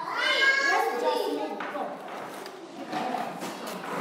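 Young children's voices calling out together, high-pitched and loud in the first second and a half, then settling into softer mixed chatter.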